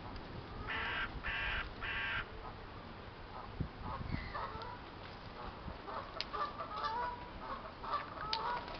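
Three harsh bird calls in quick succession about a second in, each roughly half a second long, followed by faint scattered short sounds over outdoor background noise.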